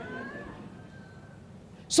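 A faint, high-pitched voice held for about a second and a half, rising slightly and then fading, over quiet room noise.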